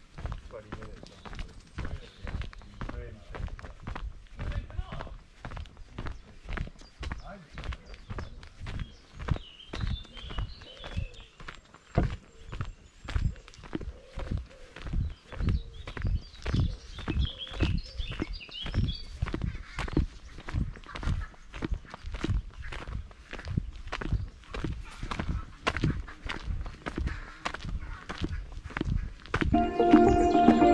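Steady footsteps of a person walking on an earth-and-gravel footpath, about two steps a second.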